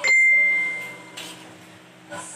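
A single loud metallic ding at the start, one clear ringing tone that fades over about a second before stopping.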